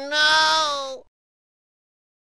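Cat meowing: one long meow that ends sharply about a second in.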